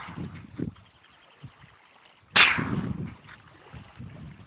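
A single rifle shot from a .22 LR AR-15 a little past halfway through: one sharp crack with a short echoing tail.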